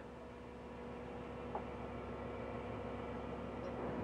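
A fishing boat's engine running steadily under way, a low even hum with a faint click about a second and a half in.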